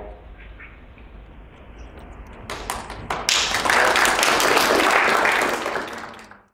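A small audience applauding: a few scattered claps about two and a half seconds in swell into steady applause, which fades out near the end.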